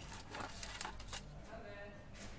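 Packaging being handled as hands lift a power adapter and its coiled cable out of a cardboard box tray: a few light knocks and rustles.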